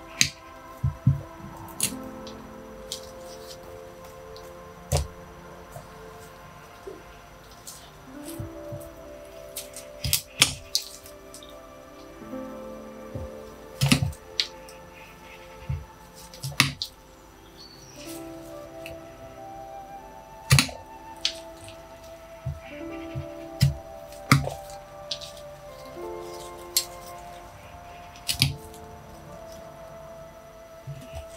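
Steel bonsai cutters snipping and cracking through the wood of a young ash tree's trunk, a dozen or so sharp cuts spread irregularly through, over soft background music.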